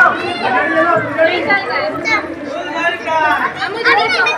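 Chatter of several voices at once, children's among them, talking and calling out.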